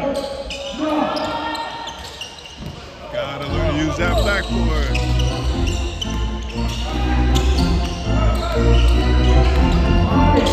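Basketball bouncing on a hardwood gym floor as players dribble up the court, with voices calling around the gym. A deep bass sound comes in about three and a half seconds in and grows louder toward the end.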